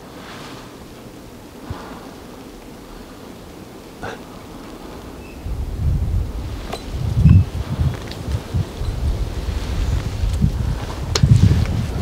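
Wind noise on the microphone, faint at first, then a low rumble that comes in gusts from about halfway through, with a few faint clicks.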